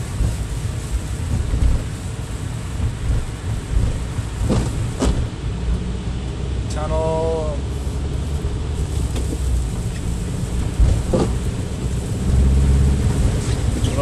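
Cabin noise of a turbocharged Volkswagen pulling away in second gear on a slushy road: a steady low engine and tyre rumble that grows louder near the end as the car gathers speed. A few sharp clicks break in about four and a half, five and eleven seconds in.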